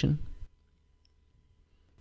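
A spoken phrase trails off in the first half second. Then near silence, with a very faint click about a second in.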